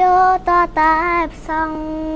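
A woman singing, holding long steady notes with a few short breaks between phrases.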